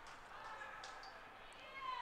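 Faint ice-rink ambience with distant voices calling out, including a high-pitched call that glides near the end.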